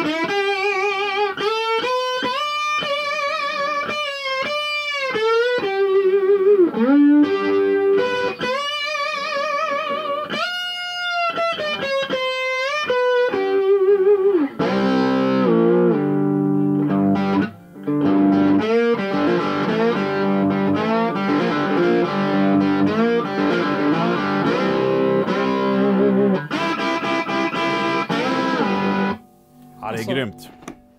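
1950s Gibson lap steel guitar played with a steel bar through a vintage Gibson valve amp's microphone input: a sliding melody of single notes with wide vibrato, then fuller chords from about halfway, with a brief break partway through. The tone is a little dirty, 'skräpigt' (trashy).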